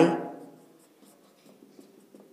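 Marker pen writing on a whiteboard: a few faint, short scratchy strokes from about a second in.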